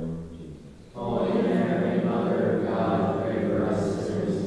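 Congregation chanting a prayer together in unison on a steady reciting pitch. The voices come in loudly about a second in, after a short lull.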